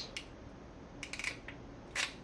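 Ratcheting wire crimper clicking as it closes on a heat-shrink butt connector on a harness wire. There is a quick run of clicks about a second in, then a sharper single click near the end.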